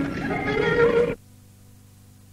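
Carnatic concert music in raga Shankarabharanam, a melodic line gliding in pitch, that cuts off abruptly about a second in. A faint steady hum and hiss from the recording is left behind.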